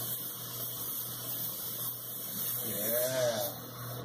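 Handheld gas torch flame hissing steadily on a crucible of molten silver, cutting off right at the end as the torch is shut off.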